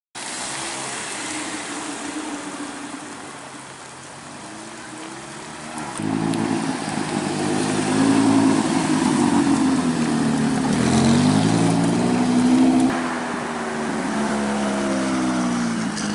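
Supercar engines revving as the cars drive off, in short clips joined by sudden cuts. The loudest stretch, from about six to thirteen seconds, is a Lamborghini Huracán Spyder's V10 engine, its pitch rising and falling as it revs through the gears.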